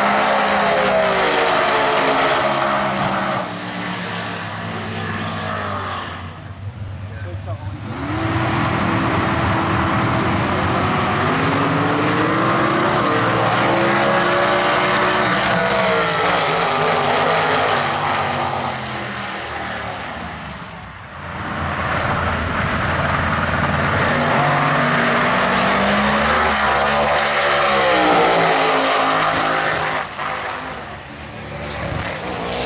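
Drag-racing cars at full throttle down the strip, a pair at a time: the engine notes climb in pitch as they pull through the run, then fall away. This happens three times, with brief drops in the sound about a quarter of the way in and again about two thirds of the way through.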